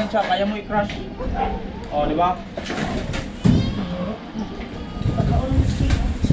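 Indistinct voices of people talking in a room, with no clear words.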